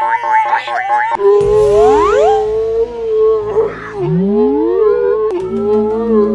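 Electronic sci-fi 'alien signal' sound effects: a pulsing, theremin-like tone gives way about a second in to a lower wavering tone with several rising swoops in pitch.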